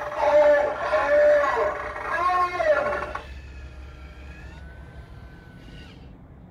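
Spirit Halloween Zombie Bait animatronic playing its recorded zombie voice through its speaker, a loud cry rising and falling in pitch for about three seconds. Then a quieter steady motor whine as the prop lifts itself back up.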